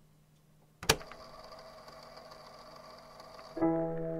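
The gap between two tracks of a lofi music mix: a faint hiss, one sharp click about a second in, then a quiet steady hum with held tones, and the chords of the next track starting near the end.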